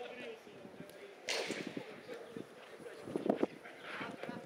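Small-sided football game on artificial turf: players' shouts and calls, with a sudden loud cry about a second in and a couple of dull ball kicks a little after three seconds.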